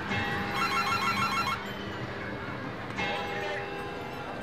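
Electronic dance music. About half a second in, a rapid beeping synth figure like a phone ringing plays for about a second over the ongoing track.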